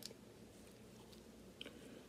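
Near silence, with a faint click or two from a polymer .22 LR pistol magazine being handled in gloved hands.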